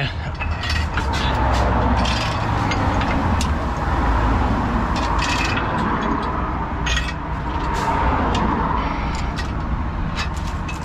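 Steel recovery chain clinking and rattling in short, irregular clicks as it is fed around a lorry's rear axle. A steady low engine rumble runs underneath.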